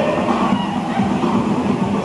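Music for a water-aerobics class, blurred by the echo of an indoor pool hall, over the continuous churning and splashing of a group moving through the water.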